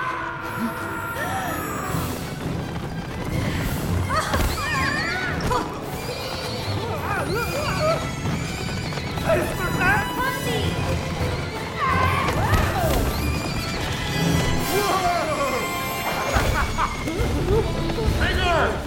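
A herd of animated glowing rabbit-like creatures calling as they stampede: many short squeals that rise and fall, overlapping one another, over film score music and a low rumble.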